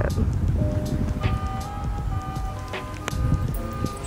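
Background music with held, sustained notes over a steady low rumble.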